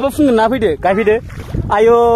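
Loud voices talking, ending in a long drawn-out call near the end, over a low rumble of wind on the microphone.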